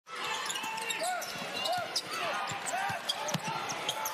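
Live basketball game sound on a hardwood court: repeated short sneaker squeaks and the thud of the ball bouncing, over steady arena crowd noise.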